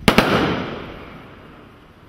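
A firework rocket bursting with two sharp bangs in quick succession, followed by an echo that fades over about a second and a half.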